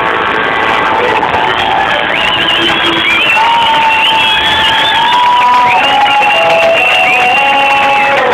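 Live rock concert audio: sustained high notes, some sliding in pitch, ring out over a crowd cheering and applauding.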